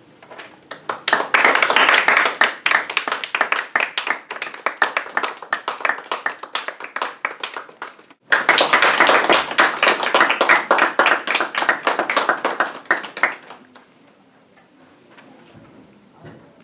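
A small audience clapping. The applause stops abruptly about eight seconds in, picks up again straight away, and dies away near the end.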